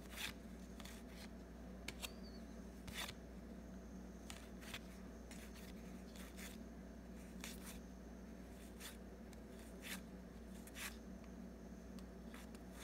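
Baseball trading cards slid one at a time off a stack by hand, a soft, faint papery swish about once a second, over a steady low hum.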